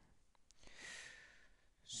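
A person's faint intake of breath, about a second long, in otherwise near silence.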